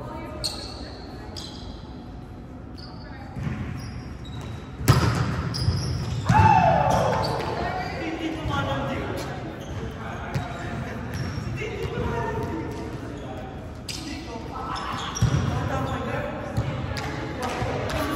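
Volleyball being played in a reverberant gym: sharp smacks of the ball being hit, the loudest about five seconds in, with players calling out and shouting across the court.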